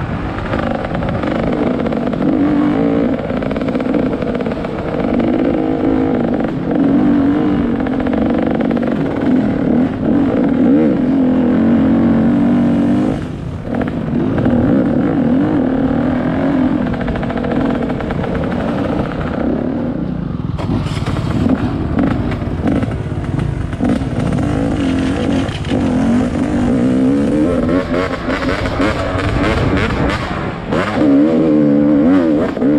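Enduro dirt bike engine running under the rider as it is ridden along a dirt trail, the revs rising and falling with the throttle. There is a brief drop in engine noise about 13 seconds in.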